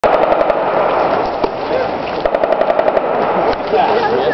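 Two short bursts of automatic fire from an M249 light machine gun, the first right at the start and the second a little over two seconds in, each a rapid string of sharp reports. Voices talk underneath.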